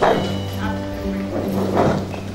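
A man singing a worship song through a handheld microphone and PA system over sustained backing music. His voice comes in phrases, at the start and again near the end.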